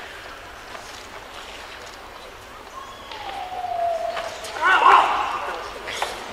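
Voices in a sparring hall with a steady crowd murmur. About three seconds in a drawn-out voice falls in pitch, and it is followed just before the end by a loud shout, the loudest sound here.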